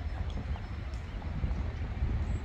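Hoofbeats of two horses walking on a paved path, over a low steady rumble.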